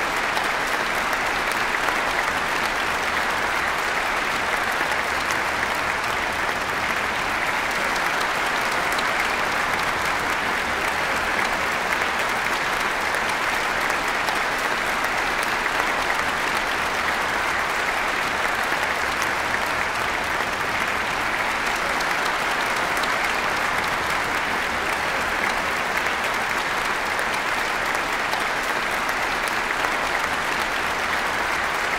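Audience and orchestra applauding steadily in a concert hall, a sustained ovation that holds at one level throughout.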